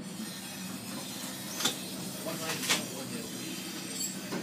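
Interior of an overhead geared-traction passenger elevator car: a steady low hum with two sharp knocks, about a second and a half in and again a second later, as the doors shut and the car gets under way.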